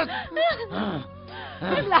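Voices crying out and gasping in distress in short, strained bursts over steady background music.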